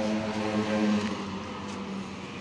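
A vehicle engine running with a steady, even low hum that eases off slightly toward the end.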